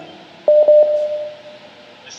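Telephone line noise coming through the studio's phone hookup: a few clicks about half a second in, then a single steady tone that fades away about a second later.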